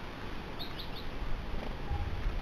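House sparrow chirping: three short, quick chirps a little over half a second in, over a steady background hiss.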